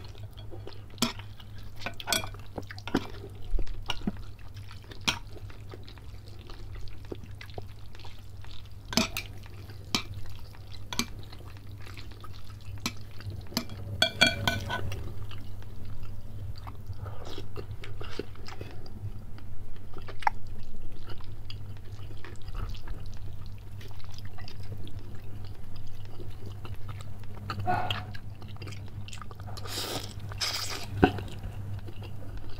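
Close-up eating sounds of a man working through a meatball and noodle soup: chewing, wet mouth noises and scattered short clicks of chopsticks and a spoon against a glass bowl, over a steady low hum. Noodles are slurped near the end.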